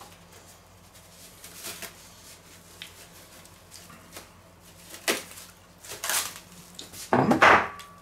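A few faint clicks and rustles from someone moving about and handling things in a kitchen, then near the end a man's short approving 'hm' as he tastes a freshly made dip.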